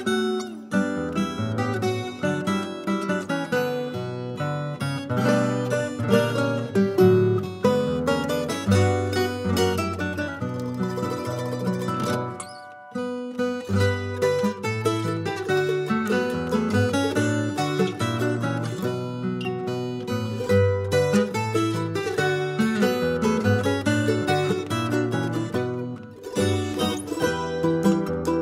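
Instrumental Andean huayno played on plucked nylon-string acoustic guitars and a small high-pitched stringed instrument, over a double bass line. The music thins out briefly a little before halfway, then picks up again.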